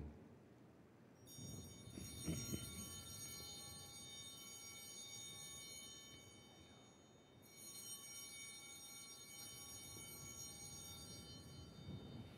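Altar bell struck twice at the elevation of the host during the consecration, faint, each stroke ringing on for several seconds: once about a second in and again past the middle.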